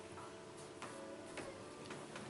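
Three sharp clicks, about half a second apart, over the fading ring of a softly played acoustic guitar.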